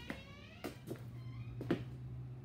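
A steady low electrical hum, with a few sharp clicks and taps scattered through it and a short falling squeak at the very start.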